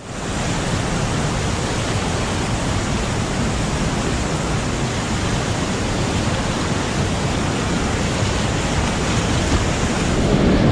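Steady rush of whitewater rapids, heard from a kayak in the current.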